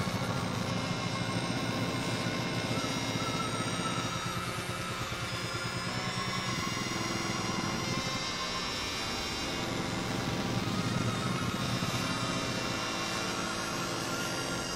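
Dense experimental synthesizer drone: many steady tones stacked from low to high, some of them warbling, over a fast low flutter, holding an even level throughout.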